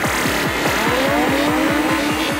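Psytrance track: a rolling bassline pulsing about seven times a second under electronic synths, with a pitched sweep that glides upward from about halfway through.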